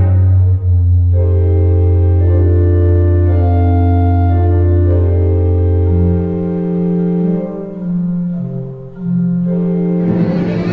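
Organ music: slow held chords that change every second or so, over a low sustained bass note that drops out about six and a half seconds in.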